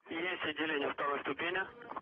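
Speech over a radio link: a voice on the air-to-ground communication loop, thin and telephone-like.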